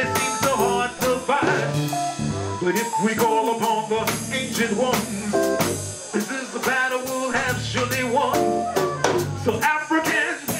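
Live band music: a man sings into a handheld microphone over a steady drum beat and low bass notes.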